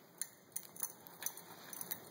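Faint, irregular metallic clicks and ticks, about six in two seconds, the first the loudest. They come from steel tongs knocking against a glowing lump of thermite-made iron in a sand-filled steel tray.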